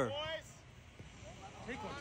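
A man's voice trails off in the first half-second, then quiet outdoor ambience with a faint distant voice near the end.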